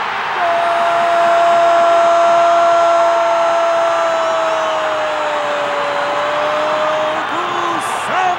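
Brazilian TV football commentator's goal cry: one long held note of about seven seconds, sinking slightly in pitch near the end, over the noise of the stadium crowd.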